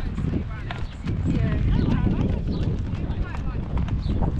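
A horse walking, its hooves clip-clopping on a gravel track, over a low steady rumble.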